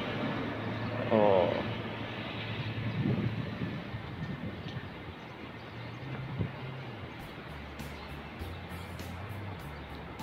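Quiet background music, a low bass line with faint ticking percussion coming in about halfway through, over a steady outdoor noise; a man says a brief "oh" about a second in.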